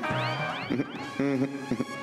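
Comic background score made of quick, meow-like pitch glides sweeping up and down, with a short laugh at the start.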